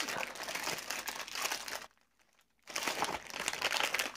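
Thin printed wrapper on a brick of Roma Plastilina oil-based modeling clay crinkling as hands handle and fold it back. The crinkling stops for under a second about halfway through, then starts again.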